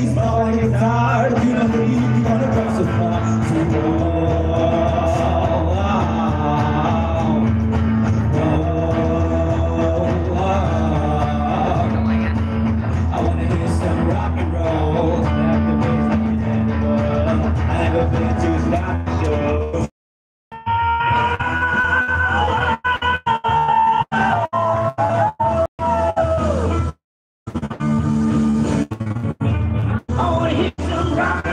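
Live rock band playing, with singing over guitars. About twenty seconds in the sound cuts out for a moment, then keeps breaking up with many short dropouts and cuts out again near the end.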